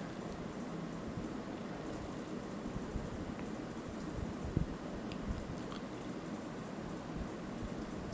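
Steady, low room noise, a faint hum and hiss with no speech. There are a couple of faint short ticks a little after halfway through.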